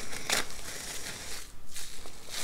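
Plastic cling wrap crumpled in the hands: irregular crinkling and crackling, with a sharper crackle near the start.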